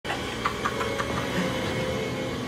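A steady rumbling drone with a faint sustained tone, and a few light ticks in the first second.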